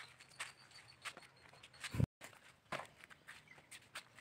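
Dry coconut husk fibre rustling and crackling in irregular bursts as it is pulled apart by hand, with one dull knock about two seconds in.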